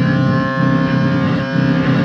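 Loud, heavily distorted electric guitar music: a dense low chugging pulses in a steady rhythm under a single note held above it.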